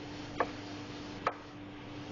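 Chef's knife chopping tomato flesh into small dice on a plastic cutting board: two sharp knocks of the blade against the board, about a second apart, over a steady low hum.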